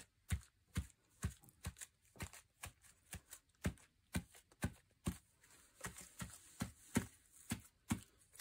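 A stiff round brush dabbed repeatedly onto paper journal pages: faint, soft taps, two to three a second at an uneven pace.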